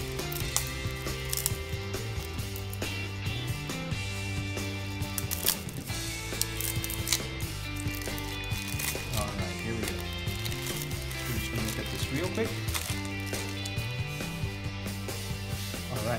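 Background music with slow-changing held notes, over the crackling and crinkling of plastic shrink-wrap being peeled off a deck of cards.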